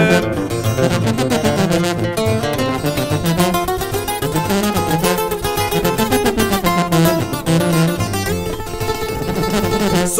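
Instrumental break of a Mexican corrido: acoustic guitars picking a fast, busy melodic run over a steady pulsing bass line, with no vocals.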